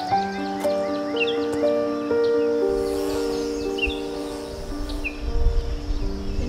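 Instrumental background music of slow, held notes changing pitch every second or so. Short bird chirps come through a few times.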